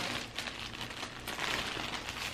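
A thin clear plastic bag crinkling as hands open it and rummage inside, in irregular small rustles.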